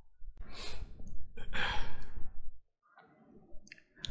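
A man breathing out heavily in a few noisy sighs. The sound then cuts briefly to dead silence.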